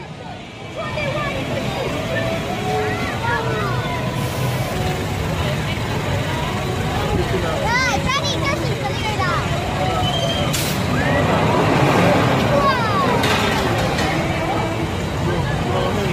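Theme-park ambience: a steady low machinery hum under scattered voices of the crowd and children, with a roller coaster train running along its steel track, louder for a couple of seconds about twelve seconds in.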